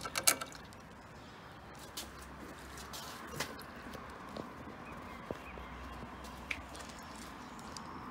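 Quiet background with a few scattered light clicks and taps from handling the small metal parts of a pressure-washer unloader valve: a short cluster just after the start, then single clicks a second or two apart.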